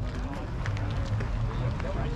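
Indistinct background voices of people talking over a steady low rumble.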